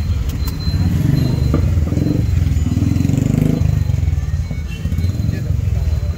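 Steady low rumble of street traffic with indistinct voices in the background.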